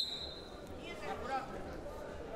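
A referee's whistle blown once, a short steady high tone at the very start, followed by faint shouting voices.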